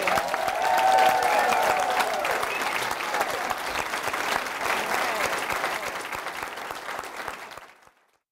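Large seated audience applauding, with a few voices calling out over the clapping in the first couple of seconds; the applause fades away near the end.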